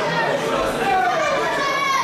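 Spectators' voices echoing through a sports hall: many people talking and calling out at once, children's voices among them.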